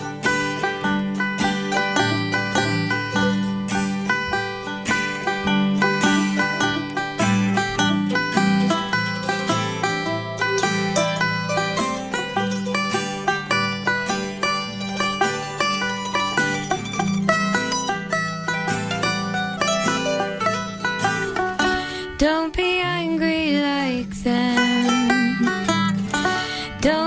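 Instrumental break in an acoustic folk song: banjo and mandolin picking quick runs of notes over a steady low accompaniment. Near the end, a gliding pitched line bends up and down over the picking.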